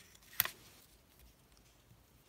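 Fingers handling a paper sticker and pressing it onto a planner page: one sharp click about half a second in, then faint paper rustling.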